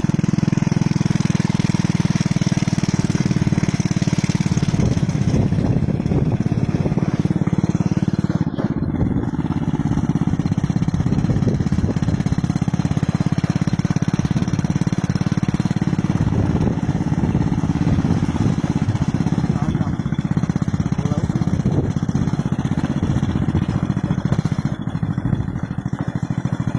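A small engine running steadily throughout.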